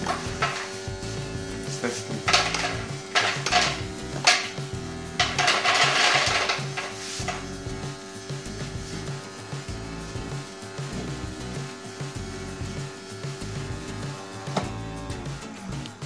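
Automatic pet feeder's dispensing motor running its reset cycle: a steady motor hum with dry kibble clattering in the dispenser, mostly in the first seven seconds. The motor stops near the end as the cycle finishes.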